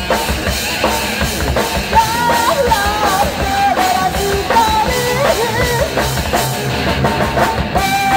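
Live rock band playing loudly: electric guitar, bass guitar and drum kit, with a pitched line bending up and down over a steady beat.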